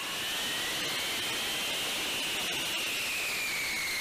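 B-52 Stratofortress's Pratt & Whitney turbofan jet engines running at taxi power: a steady jet rush with a high whine that rises slightly, then slowly falls in pitch.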